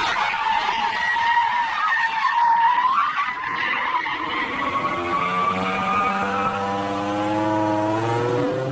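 Honda NSX sliding sideways, its tyres squealing with a wavering high pitch for the first few seconds. Its engine note then comes in and holds, rising slightly toward the end.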